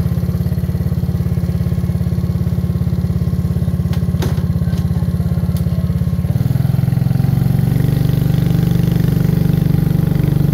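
Small motorcycle engine running steadily as the bike is ridden along a dirt road. The engine note shifts about six seconds in, and a few light clicks or rattles come just after four seconds.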